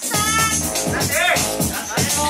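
House music from a DJ set over a club sound system: a steady beat with high, sliding voice-like sounds over it.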